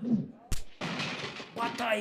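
A single sharp bang about half a second in, followed by a noisy tail that fades over about a second.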